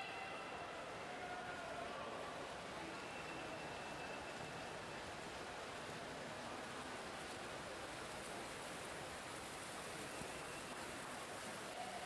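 Steady natatorium ambience during a freestyle race: a continuous hiss of spectators and swimmers' splashing, with no single event standing out.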